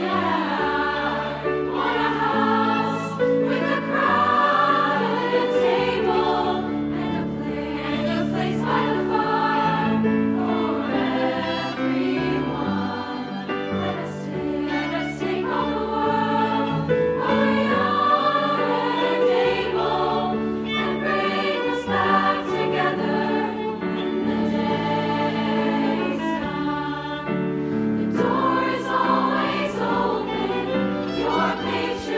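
A choir of young women's voices singing in harmony with sustained, legato phrases.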